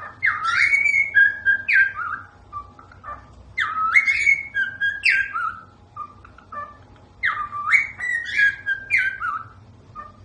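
A cockatiel whistling the same short tune three times, each phrase a run of sliding, rising and falling notes about two seconds long.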